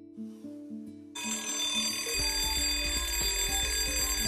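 A wake-up alarm starts ringing about a second in, a shrill, rapidly pulsing ring that keeps going. Plucked guitar music plays underneath it at first, then stops.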